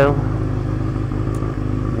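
Honda CBR600 F2 motorcycle's inline-four engine running steadily at an even pitch as the bike rolls slowly, picked up by a helmet-mounted camera.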